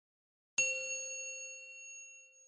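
A single bright chime struck about half a second in, ringing with several overtones and slowly fading away.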